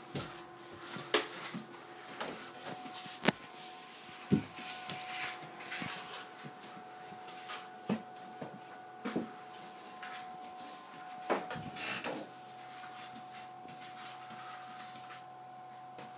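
Scattered knocks, clicks and brief scrapes of things being handled and set down on a wooden floor while a room is swept and tidied, with a faint steady tone behind.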